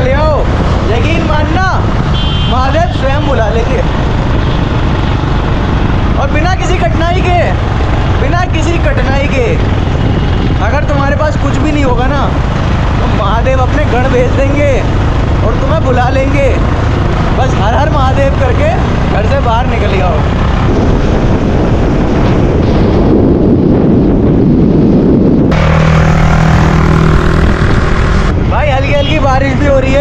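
Loud wind buffeting and rumble from riding on a motorcycle, running under a man's talk, with a few seconds of steadier droning near the end.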